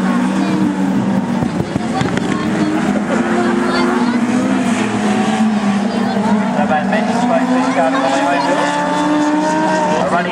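Dwarf racing cars' motorcycle-derived engines running at speed around a dirt oval, several engine notes slowly rising and falling as the cars lap, with a steadier engine drone underneath.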